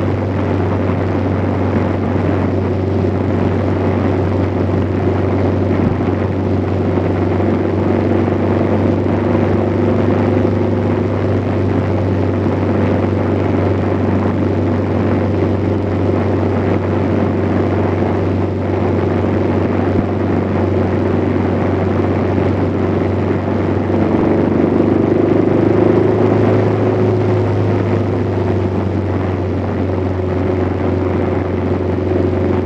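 Steady engine drone and road and wind noise from a vehicle cruising at an even speed, heard from a phone mounted on it; it swells slightly about three-quarters of the way through.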